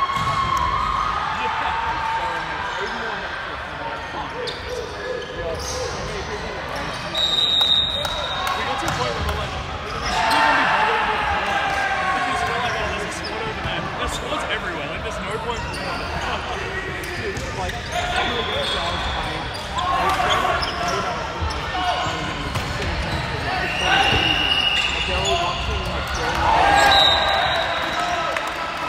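Indoor volleyball play in a large hall: players shouting and calling, ball strikes, and short high squeaks of sneakers on the wooden court, all echoing. The loudest moments are about 8, 10, 24 and 27 seconds in.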